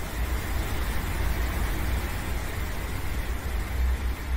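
Steady background noise with a low rumble under it.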